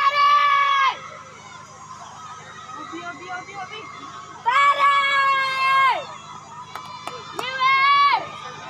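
Spectators shouting long, high-pitched cheers for a runner, three drawn-out calls that each drop in pitch at the end: one at the start, one about halfway through and one near the end. Crowd chatter runs in between.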